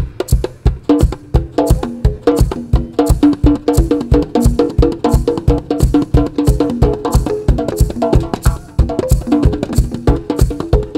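Handpan played in a fast rhythmic solo, its ringing steel notes woven with kick-drum beats and sharp knocks on a wooden percussion box.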